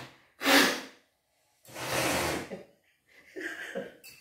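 A man blowing his nose hard into a paper tissue twice: a short blast, then a longer one.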